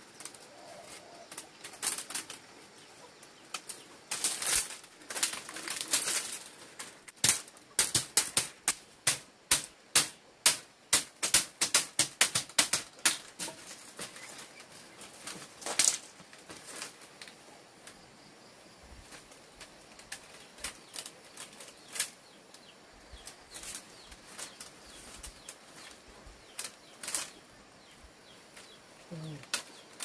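Split bamboo strips clattering and clacking against each other as they are woven by hand into a mat. The sharp clicks come scattered, with a quick run of them in the middle.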